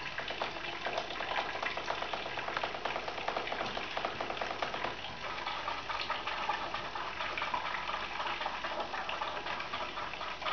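Water tap running, its stream splashing steadily with a fine crackling hiss.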